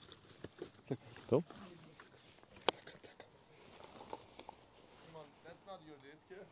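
Mostly quiet, with a brief faint spoken word and scattered faint voices, small handling noises, and one sharp click about two and a half seconds in.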